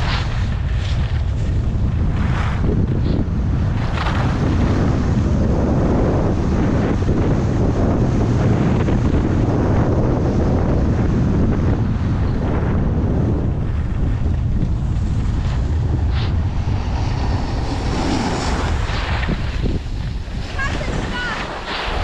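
Wind buffeting the microphone in a loud, steady low rumble, with a hiss over it, easing off near the end.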